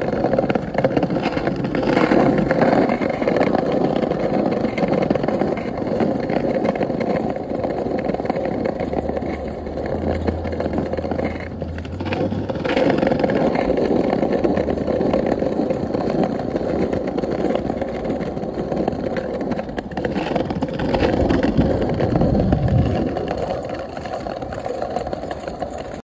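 Small hard wheels of a kick scooter rolling over hexagonal paver stones, a continuous rumbling scrape that swells and eases with speed. A low hum comes in briefly partway through, and a low falling tone comes near the end.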